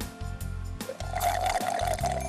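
A drink being sipped through a straw, a slurping sound starting about a second in, over background music with a steady beat.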